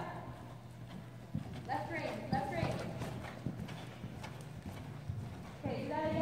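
A ridden horse's hoofbeats on the sand footing of an indoor arena, a series of irregular dull thuds.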